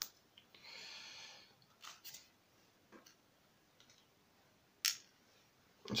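Light clicks and taps of small metal lock parts being handled and set down on a plastic pin tray. There is a brief scraping rub about a second in and a sharper click just before five seconds.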